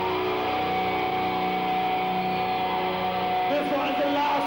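Loud, distorted live-rock PA sound with the song stopped: amplified guitars ringing on held tones over a steady noisy wash. A voice shouts into the microphone near the end.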